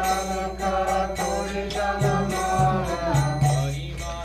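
Devotional kirtan: several voices singing a chanted melody together over a held low accompanying note, with the sharp ringing strikes of small hand cymbals or bells keeping time.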